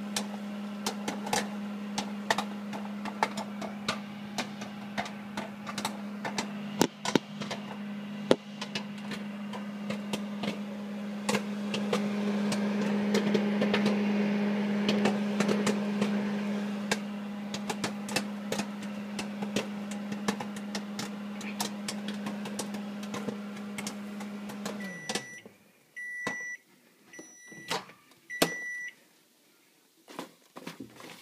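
Microwave oven running with a steady hum while two bags of microwave popcorn pop inside, the kernels popping fast and loudest in the middle of the run. The hum stops a few seconds before the end, then four short beeps signal the end of the cooking cycle.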